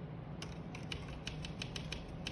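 Paintbrush working paint: a run of quick, irregular dry ticks and scratches that starts about half a second in, over a steady low hum.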